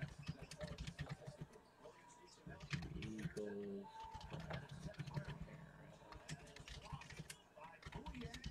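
Typing on a computer keyboard: quick, irregular keystroke clicks as names are typed in, with a brief murmur of a voice about three and a half seconds in.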